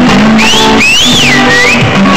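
Amplified guitar playing loud blues, with held low notes and high notes sliding up and down through the middle.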